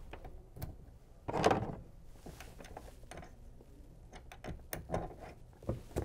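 Small clicks and knocks of hardware being handled as a bolt is hand-screwed into a plastic kayak steering mount, with a louder rustling scrape about a second and a half in and a quick run of clicks near the end.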